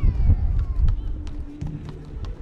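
Players running on an outdoor basketball court: footfalls and a few sharp knocks such as ball bounces, over a loud low rumble, with shouting voices in the background.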